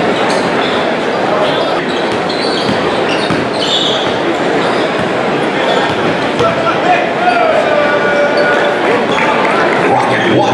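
Gym crowd chatter during a basketball game, with a basketball dribbling on the hardwood floor. A few drawn-out squeaks come in the second half.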